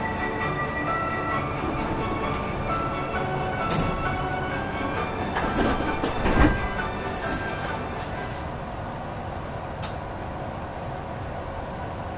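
Heathrow Express Class 332 electric train at an underground platform: a rushing noise builds to a loud thump about six seconds in, followed by a brief hiss. A slow tune of held notes plays throughout.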